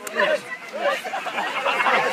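Several voices calling out over one another during a tug-of-war pull: the pulling team and those around them urging each other on.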